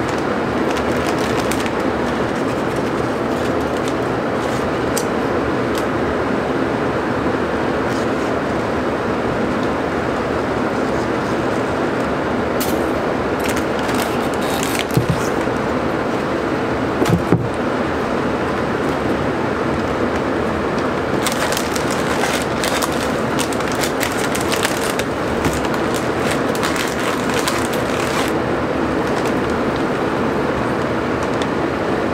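Steady rushing fan noise of a laminar flow hood blowing through its HEPA filter, with spells of plastic crinkling from the bag over a substrate tin being handled and pierced, thickest in the second half.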